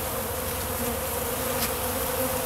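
Many honeybees buzzing as they crowd and fly around an open pollen feeder, a steady hum.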